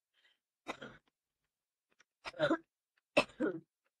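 A person coughing three times, a small cough about a second in followed by two louder ones near the end.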